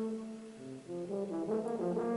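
Background music led by a brass instrument: one held note that fades, then a few short notes stepping between pitches.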